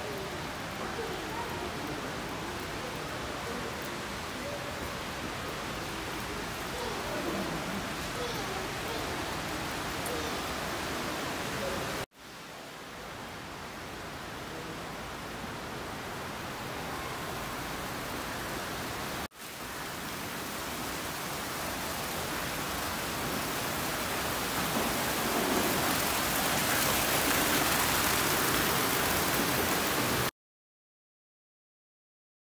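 Indoor shopping-mall ambience: a steady wash of echoing background noise and distant voices, broken off abruptly twice. In the last several seconds a splashing water fountain grows louder.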